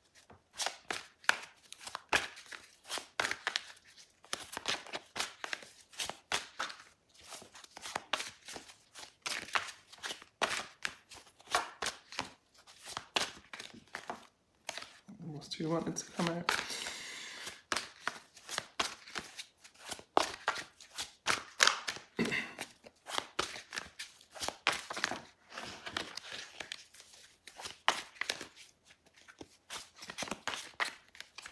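A deck of tarot cards being shuffled by hand: a long run of quick soft clicks and slaps with short pauses. About fifteen seconds in, a brief wordless voice.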